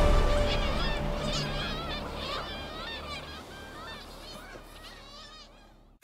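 A seabird colony calling: many short overlapping calls that fade out steadily to near silence. The tail of background music is still faintly under them at the start.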